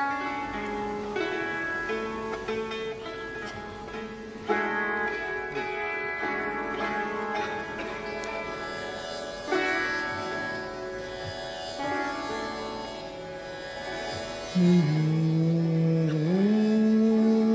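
Sarangi playing a slow melodic introduction in long held notes, with fresh accents every few seconds. A louder, lower held note comes in near the end.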